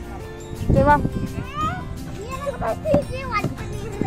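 A young child's voice, with rising and falling calls, over background music with steady held notes.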